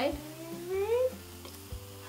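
A young woman's wordless, drawn-out vocalization: one voice gliding upward in pitch for about a second, then trailing off into a faint held tone.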